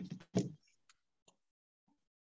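A few short, faint computer mouse clicks, spaced irregularly across a second or so, as a text box is drawn on a slide.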